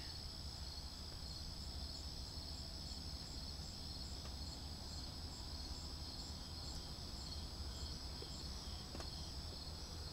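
Night insect chorus: a steady high-pitched trill, with a second insect call pulsing at a regular beat above it that stops near the end, over a low steady rumble.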